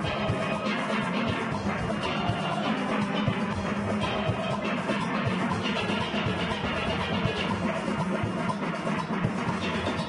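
A full steel orchestra playing: many steelpans ringing together in a dense, steady ensemble over a driving percussion rhythm section.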